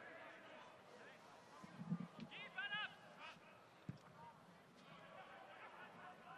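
Faint open-air football stadium ambience with no commentary, a distant voice shouting briefly about two and a half seconds in, and a single short knock near the four-second mark.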